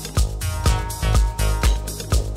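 Electronic dance music from a live DJ set played loud over a club sound system, with a steady kick drum at about two beats a second.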